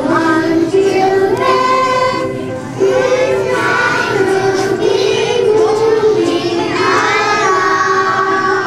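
A group of young children singing a song together, holding their notes.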